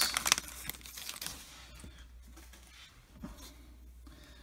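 Foil wrapper of a 2013 Topps Chrome baseball card pack tearing and crinkling, loudest in the first second, then fading to faint rustling as the cards are handled.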